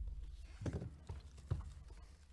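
Cardboard trading-card hobby box being handled and set down on a table: three dull, hollow knocks about half a second apart, with some rustling.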